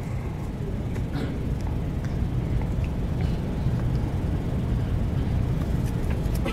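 Steady low rumble of background room noise picked up by the microphone, with a faint click about a second in.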